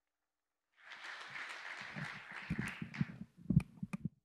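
Audience applause that starts about a second in and dies away, followed by low thumps and a few sharp knocks of a lectern microphone being handled.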